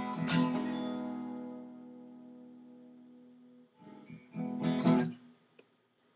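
Steel-string acoustic guitar strummed, its last chord left to ring and fade away over about three seconds. Two brief strums follow, about four and five seconds in.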